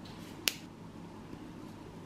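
Stainless toenail nippers snipping a thickened toenail once: a single sharp snap just under half a second in, over faint steady room noise.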